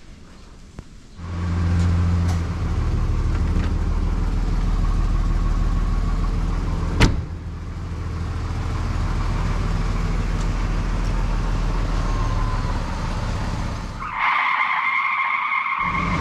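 Mercedes-Benz W202 C-Class engine running at a steady idle, coming in about a second in, with one sharp click about seven seconds in.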